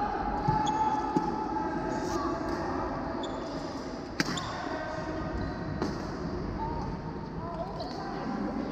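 Badminton rackets hitting a shuttlecock during a rally: a handful of sharp clicks, the loudest a crisp smack from an overhead shot about four seconds in, over a background murmur of voices.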